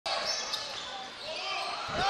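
Basketball game sound in a gym: sneaker squeaks on the hardwood and a ball bounce about half a second in, over a steady murmur of the crowd.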